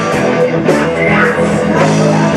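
Live blues-rock band playing: electric guitars, bass guitar and drum kit together, with a guitar note bending upward about a second in.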